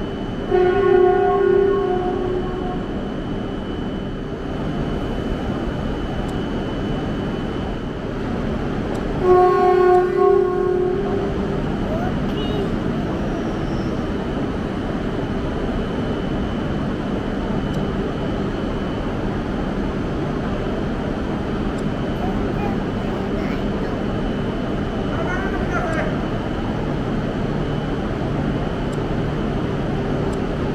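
E6 Komachi Shinkansen train creeping slowly along the platform to couple with a waiting E5 Hayabusa, a steady running noise under the station roof. A horn sounds twice, briefly about a second in and again about ten seconds in.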